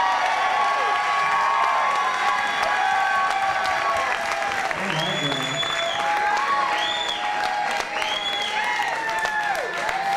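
Audience applauding and cheering, with shouting voices throughout and several high whoops from about halfway through.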